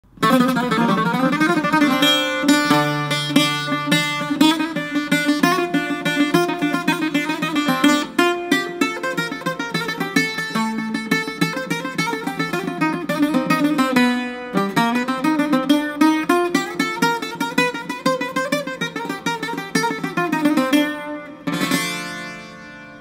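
Greek bouzouki played solo: an instrumental rumba in fast runs of picked single notes, with a short break about fourteen seconds in, stopping just before the end.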